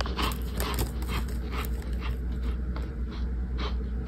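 Close-up crunching and chewing of a dry cornstarch chunk, a run of crisp crunches about three a second.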